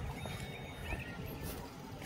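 Quiet outdoor background noise with a low, steady rumble and a few faint ticks.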